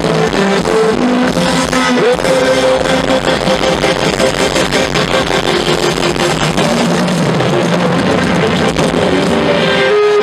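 Live rock band playing loudly over the PA: electric guitars and a drum kit, heard from among the audience, with a bent guitar note about two seconds in.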